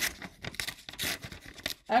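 A sheet of paper being torn apart by hand in a few short, irregular rips.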